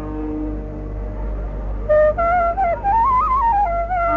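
Carnatic bamboo flute playing in raga Shuddha Saveri: after softer held tones, a new phrase enters about two seconds in, its notes shaking in quick ornaments as it climbs and then falls back. A steady low hum runs underneath.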